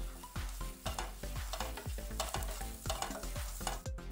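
Wooden spatula stirring and scraping a frying masala mixture in a nonstick frying pan, several short scrapes a second over a light sizzle.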